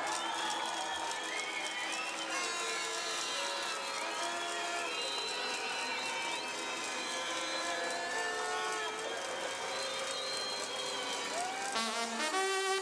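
Large crowd cheering, shouting and clapping, many voices and held, wavering tones overlapping in a steady din.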